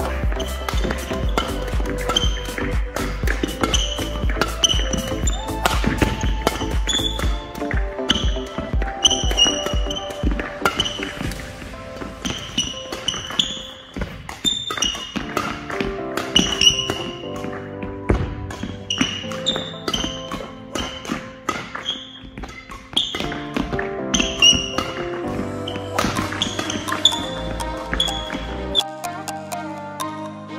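Background music: short repeating high notes over a steady beat, with a heavy bass line that drops away partway through.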